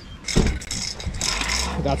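A knock, then metal spray cans clinking and clattering as they are handled and gathered up, with wind rumbling on the microphone.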